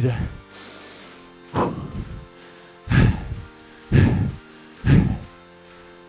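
Background music with a man's forceful breaths out, four of them about a second apart, from the effort of repeated reverse lunges with a kick.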